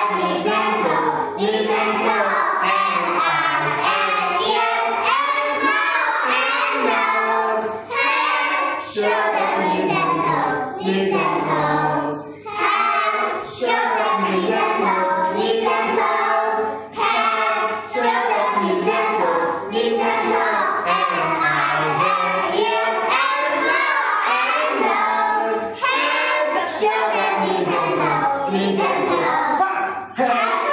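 A class of young children singing a song together, in phrases with short breaks between them.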